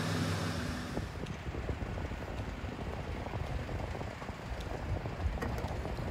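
Street noise: a low, steady rumble of road traffic, with a high hiss that fades away over the first second or so.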